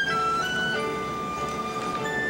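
Orchestral music from the musical's score: a slow, high melody line stepping down over held chords, settling on a long held note about a second in.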